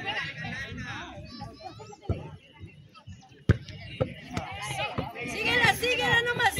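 Players and spectators calling and shouting around a football pitch, the voices growing louder near the end, with a few sharp knocks, the loudest about three and a half seconds in.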